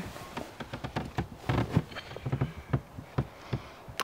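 A person climbing into a truck bed camper and onto a sheet-covered mattress: irregular rustling of bedding, with scattered knocks and bumps against the truck bed and its frame.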